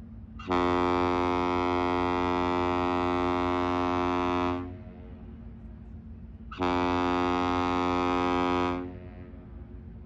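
Great Lakes freighter Rt. Hon. Paul J. Martin's horn sounding a salute. It gives a long steady blast of about four seconds, then, after a pause of about two seconds, a shorter blast of about two seconds.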